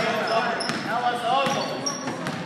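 A basketball being dribbled on a hardwood gym floor, with short high sneaker squeaks and players and spectators calling out, all echoing in a large gym.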